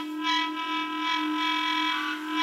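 Overlapping held clarinet notes from a multi-part canon: a steady low note sustained underneath a higher note whose brightness swells and fades about three times.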